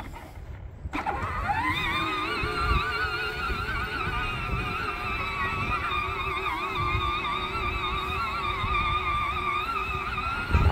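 Electric motor and gearbox of a John Deere Gator ride-on toy whining as it drives. It drops out briefly at the start, spins back up rising in pitch about a second in, then runs steadily with a wavering pitch as the load changes over the grass.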